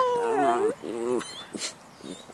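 A dog whining in a long, drawn-out cry that dips and wavers in pitch, followed by a second, shorter cry about a second in.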